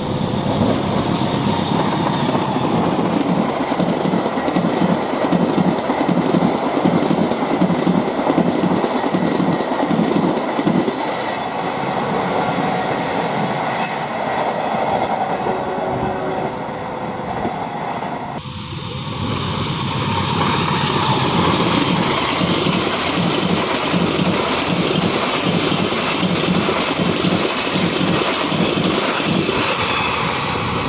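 Diesel-hauled passenger train passing close by, its coach wheels clattering in a steady rhythm over the rail joints. About two-thirds through the sound changes abruptly to another train running past with the same clatter.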